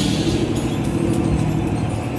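Party fishing boat's engine running with a steady low hum.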